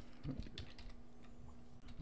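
A few faint clicks and taps on a computer keyboard, over a faint steady hum.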